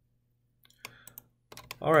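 A few quick, sharp clicks of computer keys and mouse buttons, starting about halfway in, over a faint low hum.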